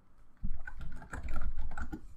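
Typing on a computer keyboard: a quick, dense run of keystrokes with heavy low thumps, starting about half a second in.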